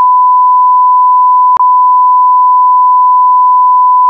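Steady, loud single-pitch test tone of a television test card, with a brief click about a second and a half in.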